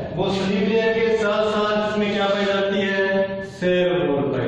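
A voice chanting in long, steady held notes, with a brief drop in level about three and a half seconds in.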